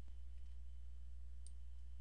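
A single faint computer mouse click about a second and a half in, over a steady low electrical hum.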